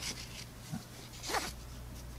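Nylon NATO watch strap sliding through a watch's spring bars and metal keeper loops: short rustling scrapes of webbing on metal, one at the start and a louder one about one and a half seconds in.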